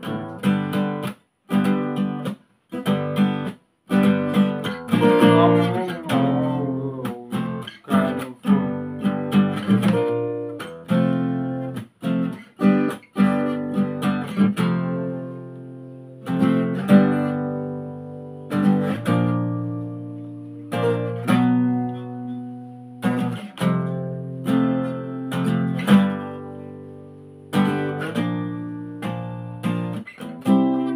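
Acoustic guitar played by hand, picking and strumming the chords of a riff with sharp attacks. It stops briefly a few times in the first few seconds, then runs on with chords left to ring.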